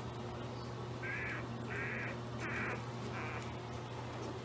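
A four-day-old pit bull puppy crying four times in quick succession, short, rasping squeals about two-thirds of a second apart.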